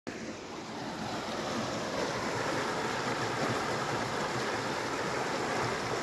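River water rushing over rocks in a narrow rocky channel: a steady rushing noise that grows a little over the first two seconds and then holds even.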